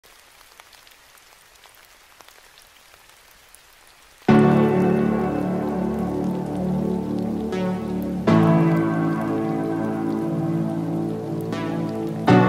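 Faint rain falling for about four seconds, then music comes in loudly with slow sustained chords, a fresh chord struck about four seconds later.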